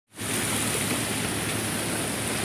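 Steady rushing of a fast, muddy mudflow torrent: a continuous, even sound of churning floodwater.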